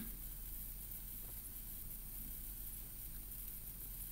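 Quiet room tone: a faint steady hiss with a low hum underneath, and no distinct sounds.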